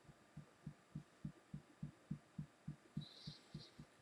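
Fingertips tapping on the upper chest near the collarbone during EFT tapping: faint, dull taps in a steady rhythm, about three to four a second.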